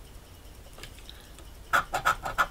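A coin scratching the coating off a scratch-off lottery ticket. It is almost quiet at first, then quick rasping strokes of the coin edge on the card start near the end.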